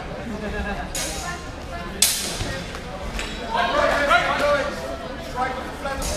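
Sword blades striking during a HEMA bout: a light clack about a second in, then a sharp, loud clash about two seconds in, followed by voices.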